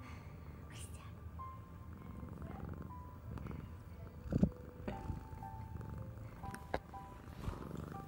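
Domestic cat purring with a low rumble close to the microphone as it rubs against the phone, with one loud knock about halfway through as its body bumps the phone. Light background music with a simple melody plays throughout.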